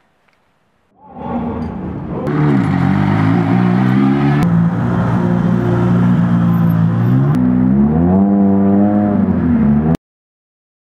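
Rally car engines running at low speed and being revved, starting about a second in. The pitch drops, holds steady, then rises again near the end, in several spliced-together shots, and the sound cuts off abruptly at the end.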